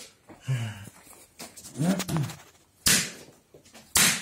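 A man's low, wordless groans in pain, then a sharp open-handed slap on bare skin of the chest from a percussive massage stroke about three seconds in, with another slap right at the end.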